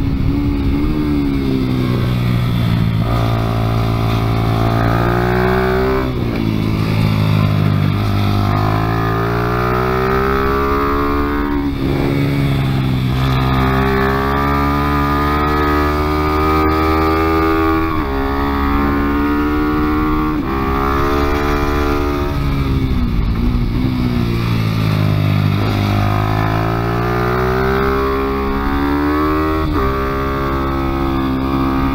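Small motorcycle engine heard from on board, its pitch climbing under acceleration and falling off again, over and over, as the bike is ridden hard around a track.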